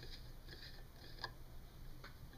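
Faint ticks of a black plastic screw cap being twisted off a small plastic fuel bottle, with one sharper click a little past halfway.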